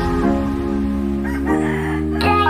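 A rooster crowing over steady background music, the crow coming about a second in.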